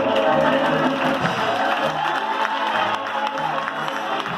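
Live school band music: a repeating bass line under held notes.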